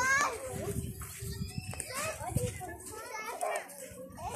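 Young children's voices calling out and chattering as they play, high-pitched with cries that rise and fall.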